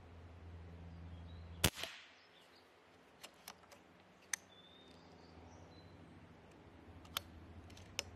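A .22 calibre Reximex Throne Gen2 PCP air rifle fires once about one and a half seconds in, a single sharp report with a short tail. Then come several sharp metallic clicks as the action is cycled to load the next pellet, with a couple more clicks near the end.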